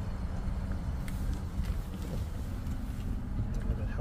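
Steady low rumble and hum inside a parked 2018 Genesis G90's cabin, with a faint steady tone that drops away about halfway through and a few light clicks.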